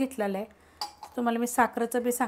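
A stainless-steel tumbler knocked and set down in an empty metal kadhai, giving a couple of short metallic clinks, while a woman talks.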